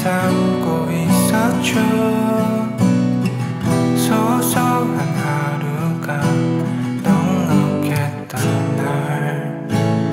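Acoustic guitar strummed as a slow, folk-style chordal accompaniment.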